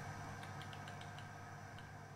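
Faint steady low hum, with a handful of light ticks in the first second.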